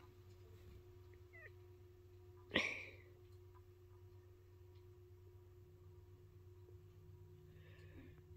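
Quiet steady hum with one brief, sharp high-pitched sound about two and a half seconds in.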